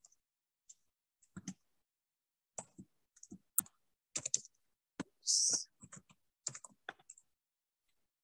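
Computer keyboard keystrokes, a couple of dozen scattered clicks at an irregular pace as a short name is typed, then another. A brief hiss a little past halfway through.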